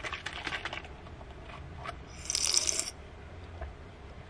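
Plastic screw cap of a small juice-shot bottle being twisted open: a run of quick clicks during the first second as the seal ring breaks, then a short hiss a little past halfway.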